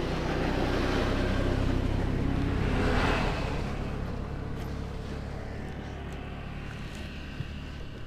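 Honda scooter's small single-cylinder engine idling steadily, while a passing motor vehicle swells and fades, loudest about three seconds in.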